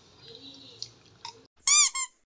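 Rubber duck squeak toy: one squeak that rises and falls in pitch near the end, followed at once by a shorter second squeak.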